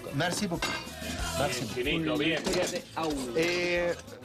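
Metal utensils clinking and knocking against stainless steel pots and a saucepan, in short irregular strikes.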